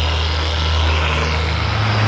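Electric car polisher running steadily with its foam pad on painted bodywork, a low even hum with a hiss above it, during the compounding cut of paint correction. Shortly before the end a different, slightly higher steady hum takes over.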